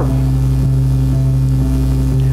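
A steady, unchanging low drone from a keyboard pad, held under the close of the sermon.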